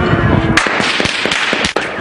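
A series of sharp explosive bangs and cracks over continuous noise: one loud bang about half a second in, then several more in quick succession in the second half.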